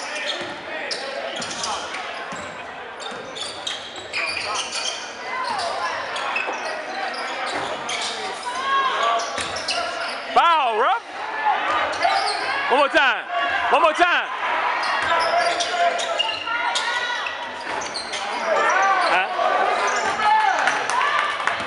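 Basketball game on a hardwood gym floor: the ball bouncing as it is dribbled, sneakers squeaking sharply a few times around the middle, and voices of players and spectators echoing in the hall.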